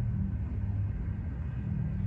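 Steady low background rumble with no clear events.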